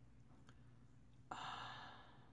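A woman sighs once: a short breathy exhale starting a little past halfway and fading, in an otherwise near-silent room.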